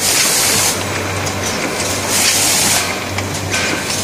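HF-BFS automatic pre-made pouch filling and sealing machine running. There are three bursts of pneumatic air hiss, at the start, about two seconds in and near the end, with clicks from the mechanism over a steady low hum.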